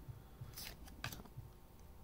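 Faint handling of a stack of thin cardboard trading cards: soft sliding with a couple of light clicks as one card is moved past the next.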